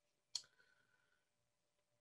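Near silence broken by one sharp click from a marker being handled, about a third of a second in, with a faint short ring after it.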